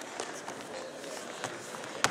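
Wrestlers' shoes scuffing and shuffling on a wrestling mat as they scramble, with a couple of short knocks, against faint voices in a gym.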